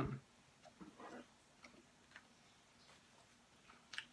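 Faint chewing of a piece of dried shredded squid: a few soft mouth clicks, with a brief quiet hum about a second in.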